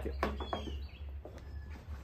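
A bird chirping faintly, a short falling note about half a second in, over a steady low rumble and a few light knocks from the camera being moved.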